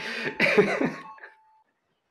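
A person laughing in a few short, breathy bursts that die away after about a second.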